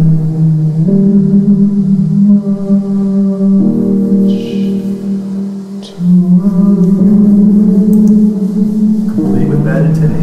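Improvised piano-and-voice demo: a man sings a slow melody in long held notes over piano chords, the chords changing every two to three seconds, with a softer passage in the middle.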